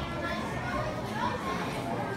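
Overlapping chatter of many young children's voices echoing in a hall, with no single voice standing out.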